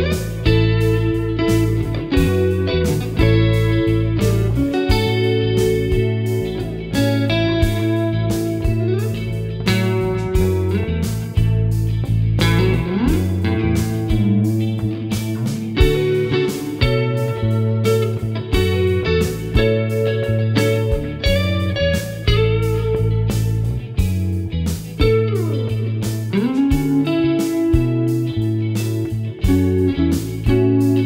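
Clean electric guitar played through a Digitech Luxe polyphonic detune pedal, a slightly pitch-shifted double thickening the notes without a chorus-like warble. It plays a melodic jam over a backing track with bass notes and a steady beat.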